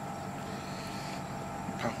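Steady background hum with no speech for most of the moment, then a man's short laugh near the end.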